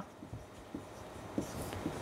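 Marker pen writing on a whiteboard: faint strokes and light taps of the tip.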